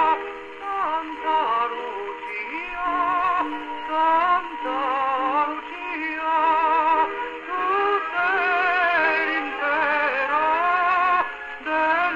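His Master's Voice horn gramophone playing a 78 rpm record through its Morning Glory horn: a voice singing with wide vibrato over an accompaniment. The sound is thin, with no deep bass and no high treble.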